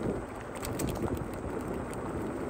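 Wind rumbling on the microphone while riding, over the faint rolling noise of a Ninebot self-balancing scooter's tyres on rough asphalt.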